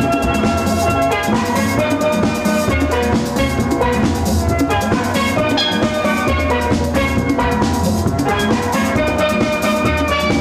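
Steel band playing a tune: several steel pans ringing out many pitched notes together over a steady rhythm, with the deep notes of the bass pans underneath.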